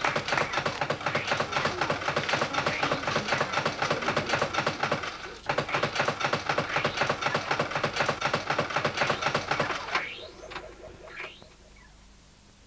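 Coin-operated fruit machine clattering with rapid, even clicks, about ten a second, for about ten seconds with a brief break about five seconds in, then a few rising electronic bleeps near the end.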